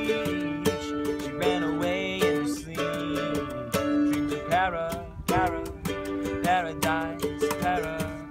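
Acoustic cover music: a mandolin strummed over a steady beat of cajon hits, with a voice singing the verse melody.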